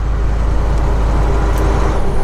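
Inside a moving semi truck's cab: the diesel engine's steady low drone mixed with road and tyre noise.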